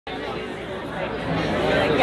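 Audience chatter: many overlapping voices talking in a crowded room, growing louder over the two seconds.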